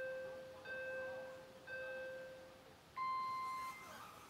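Electronic drone-race start countdown: lower beeps about a second apart, then a higher, louder start tone about three seconds in that signals the race start.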